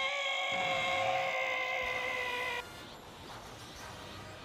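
A voice actress gives one long, high-pitched scream of rage. The pitch sags slightly before the scream cuts off sharply about two and a half seconds in, leaving a quieter background.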